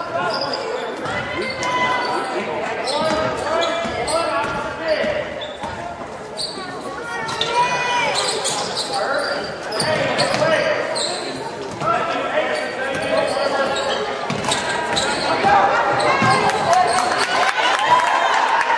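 Basketball game sounds echoing in a large gymnasium: a ball dribbled on the hardwood floor, with players, coaches and spectators calling out.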